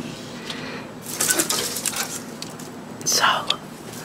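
A sliding window being opened, with light clicks and rustling, then a breathy, softly spoken "so" about three seconds in.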